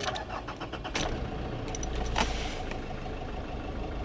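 The warm 2.5-litre YD25 turbodiesel of a Nissan Pathfinder is cranked by the starter, catches and settles into idle, heard from inside the cab.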